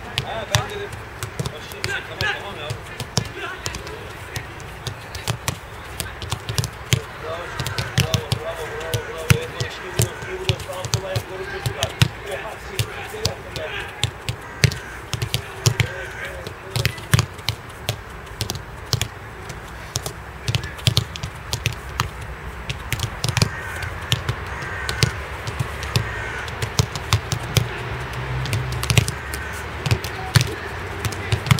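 Footballs being kicked and thudding on artificial turf, a run of irregular sharp thuds, sometimes several a second, during a goalkeeper drill, with faint voices behind.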